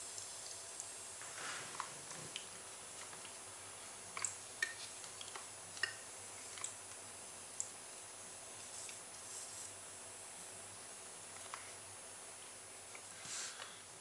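Quiet room tone with a faint steady high-pitched whine and a few scattered small clicks and taps, about a dozen spread unevenly through the stretch.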